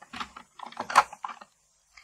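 A quick run of light clicks and taps, loudest about a second in, from makeup containers being handled and put down between products.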